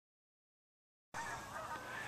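Dead silence, then faint outdoor background noise from about halfway through as the handheld recording begins.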